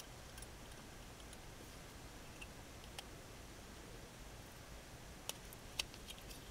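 A few faint, sharp clicks of an NRF24L01 module's metal header pins and plastic being handled and pushed into a small solderless breadboard, the two loudest a little past five seconds, over quiet room tone.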